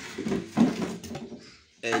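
Wooden soap-mould frames being handled and shifted on a tiled floor: wood scraping and knocking on tile, with the loudest knock about half a second in.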